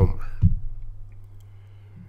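A spoken 'um' trails off into a pause, with a single soft click about half a second in over a faint, steady low hum.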